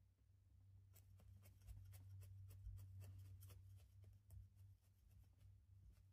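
Faint, rapid pokes of a felting needle stabbing into wool on a felting pad, about four a second, starting about a second in, over a low steady hum.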